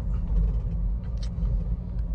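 Steady low rumble of engine and road noise heard inside the cabin of a 2010 Nissan Grand Livina with a 1.8-litre engine and automatic gearbox, driving along at a steady pace.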